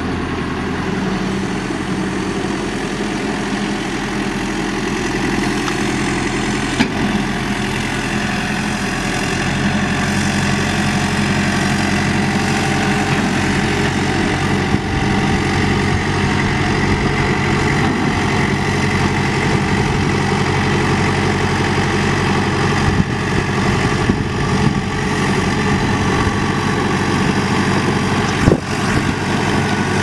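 Caterpillar 420D backhoe's Cat 3054T four-cylinder diesel engine running steadily at idle, a little louder from about ten seconds in. A few brief sharp clicks sound over it, one near the end.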